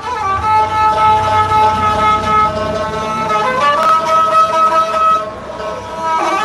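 Bowed string fiddle, held upright, playing a slow melody in long held notes with a slide up in pitch about halfway through, with a banjo accompanying.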